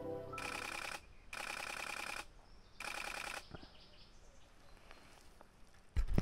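Background music fades out, then a DSLR shutter fires in three rapid bursts of continuous shooting, each lasting from about half a second to a second.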